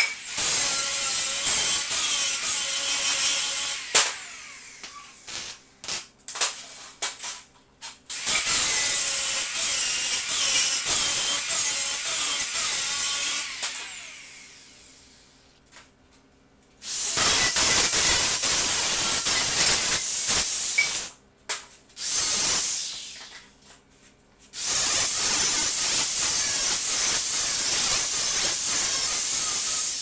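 Hand-held grinder working steel tubing in several long runs with short pauses. About halfway through, one run fades away slowly as the disc spins down. Knocks of steel being handled fall between the runs.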